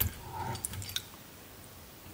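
Faint handling at a fly-tying vise: a sharp click at the start, then a few soft ticks and rustles of small hand tools and thread during the first second.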